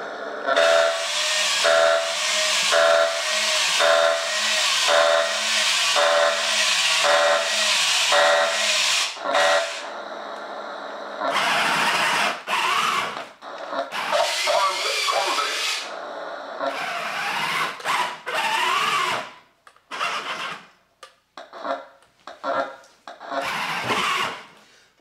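1998 R.A.D. radio-controlled toy robot: its speaker gives out a hiss of static with a beep repeating about once a second for the first nine seconds or so. Then come short irregular spells of motor whirring as the robot's body is run back up, broken by near-quiet gaps toward the end.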